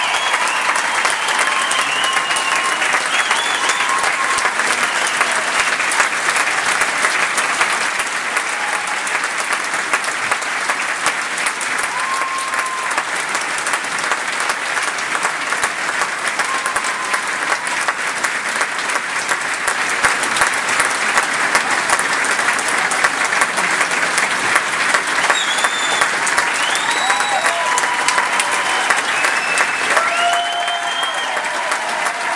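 Large concert audience applauding in a dense, steady patter of clapping, with a few scattered cheers near the start and again toward the end.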